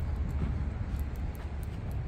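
Steady outdoor background noise: a low rumble with a faint hiss, without distinct events.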